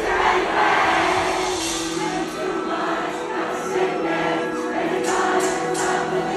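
Live band music heard from among the audience: a sustained chord held without drums, under the many voices of a crowd cheering and singing.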